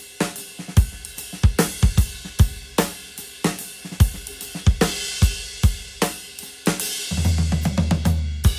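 Acoustic drum kit played in a steady rock groove: a maple Ludwig kit with a Ludwig Acrolite snare, Zildjian K Dark hi-hats and a 21-inch K Sweet ride. Kick and snare hits fall about every half second under hi-hat and cymbal wash. Near the end comes a busier fill with heavy low end.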